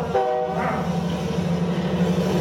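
Recorded subway train sound: a short horn note of several steady tones near the start, over the steady low rumble of the running train.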